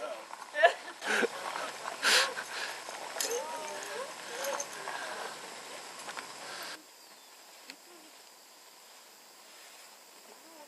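Indistinct voices with a few sharp knocks and clicks, and after a cut about two-thirds of the way in, faint outdoor background.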